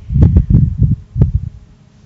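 A quick run of low, muffled thumps and bumps on a clip-on lapel microphone as its wearer shifts and leans. They stop about a second and a half in, leaving faint room hum.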